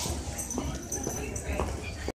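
Airport terminal background: faint voices of people walking past over a low steady rumble, with a couple of brief higher sounds about half a second and a second and a half in.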